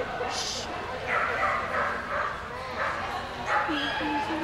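A dog barking, about six quick, high barks starting about a second in.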